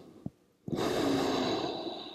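A person's audible breath, starting under a second in and tapering off near the end, with a faint click just before it.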